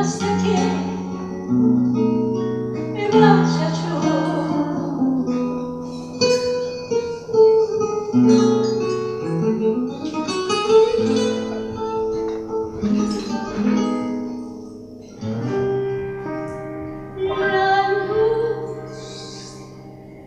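Acoustic guitar playing a tango, with a plucked melody and chords over moving bass notes.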